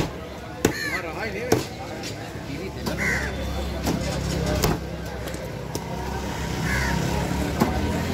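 Heavy steel cleaver chopping through fish on a wooden block: a series of sharp chops a second or two apart. A vehicle engine idles steadily underneath.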